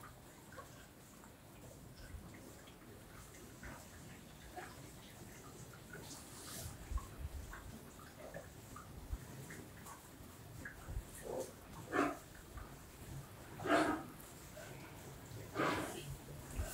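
Beef cattle in a barn pen, heard faintly: scattered soft knocks and shuffling, then a few short rushing breaths or snorts in the last few seconds.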